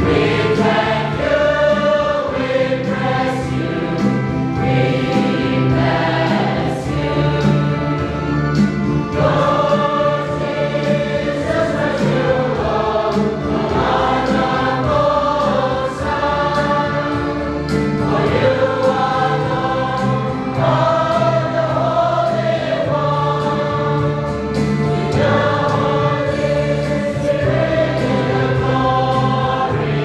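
A church congregation, mostly women, singing a hymn together, the voices moving through long held notes.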